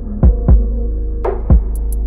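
Background music: a calm instrumental track with a held synth chord and a deep kick drum that hits twice in quick succession, like a heartbeat, then once more about a second later.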